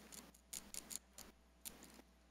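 Faint handling noise: several short rustles and light clicks as a person handles a cloth face mask at a lectern microphone.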